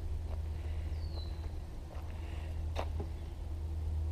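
Quiet outdoor ambience with a steady low rumble, a single short, falling bird whistle about a second in, and one sharp click near three seconds.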